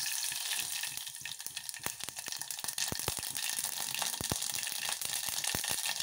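Mustard seeds frying in hot oil in an open pressure cooker: a steady sizzle with scattered sharp pops as the seeds start to splutter, more of them from about two seconds in.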